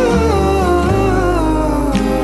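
A recorded OPM pop ballad: a male singer vocalises a wavering, sliding melody without clear words, over a steady bass and soft band backing.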